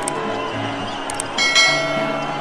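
Background music with a steady bass line, then a couple of quick clicks about a second in, followed by a bright bell chime that rings out and fades: the click-and-bell sound effect of a subscribe-button animation.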